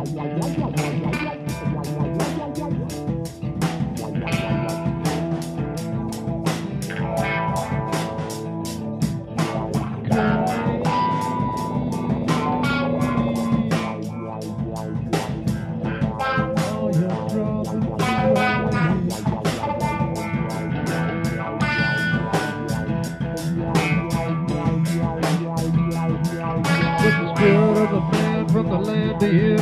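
A band playing the instrumental stretch of a song: electric guitar lines over bass guitar and a steady beat.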